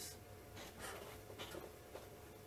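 Faint rustling and small handling noises over a low steady hum in a quiet small room.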